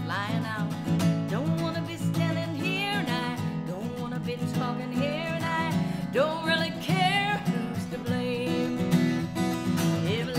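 A woman singing a country-folk song with vibrato over her own strummed acoustic guitar.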